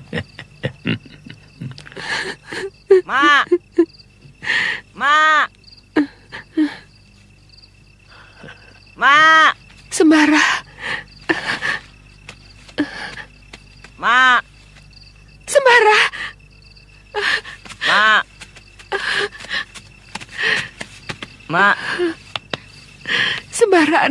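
People's voices in short bursts of calling and talking, with a run of quick laughter at the very start. Crickets chirr steadily in the background.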